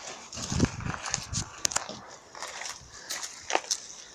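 A dog barking a few times, fainter than the nearby voices, within the first second and a half. A few sharp clicks follow later.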